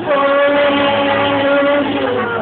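A singer holds one long note for nearly two seconds over band accompaniment of sustained chords, and lets it go near the end.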